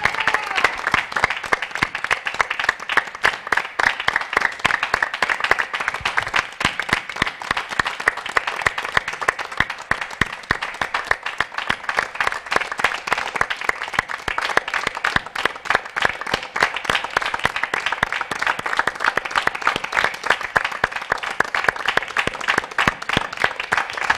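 A long, steady round of applause from a studio group clapping together.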